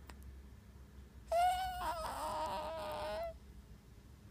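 Newborn baby's cry: one cry about two seconds long, starting a little over a second in, holding a fairly steady pitch with slight wavers.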